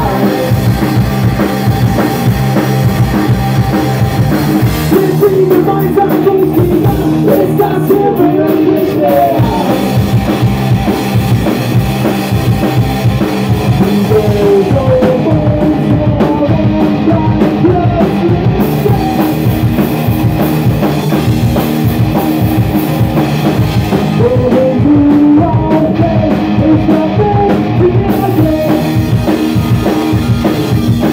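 Rock band playing a song live, loud: electric guitar, electric bass and drum kit driving a steady beat.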